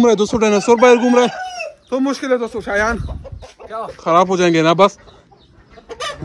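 Chickens clucking: quick runs of short repeated clucks, with a longer wavering call about four seconds in.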